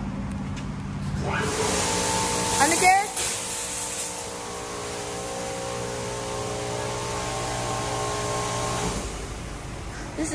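Mark VII SoftWash XT car wash machinery running: a steady hum of several tones with a hiss over it. It comes on about a second in and cuts off about a second before the end. The hiss is strongest in the first couple of seconds, and a brief rising whine comes near three seconds in.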